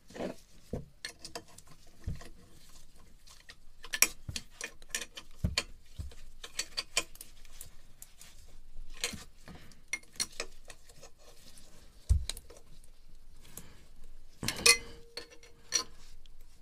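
Metal wrench clicking and knocking on the nuts of a marine diesel's exhaust elbow as they are tightened. The clicks and knocks come irregularly, a few louder than the rest, with a brief squeak near the end.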